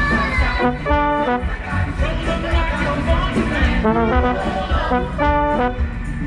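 Pit orchestra playing a musical-theatre number with the trombone and brass section to the fore. Two short held brass chords stand out, about a second in and again about five seconds in.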